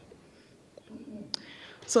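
A pause in a spoken talk: quiet room tone, then a soft in-breath and a small click before the speaker starts a new sentence with "So" at the very end.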